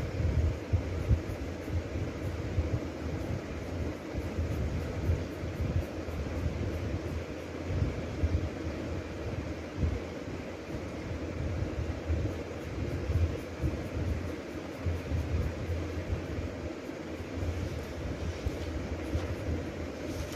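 Steady low rumbling background noise with a fluctuating bass, without clear events.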